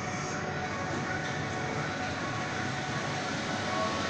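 A 550-ton servo-driven hydraulic injection moulding machine running, giving a steady mechanical hum with a few faint steady tones and no distinct knocks.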